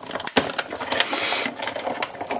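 Hand-cranked die-cutting machine running a sandwich of cutting plates through its rollers: a run of clicks and knocks, with a short scraping rush about a second in.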